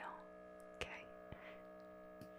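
Faint, steady hum of an MRI scanner sound effect while a scan runs, made of several level tones, with a soft click and a whispered word about a second in.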